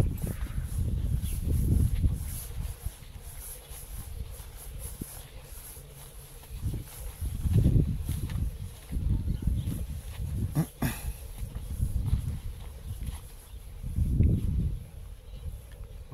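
Wind buffeting the microphone in irregular gusts, a rumbling noise that swells and fades several times, with a single sharp click about eleven seconds in.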